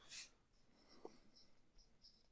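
Faint marker writing on a whiteboard: quiet short squeaky strokes, with one small tick about a second in.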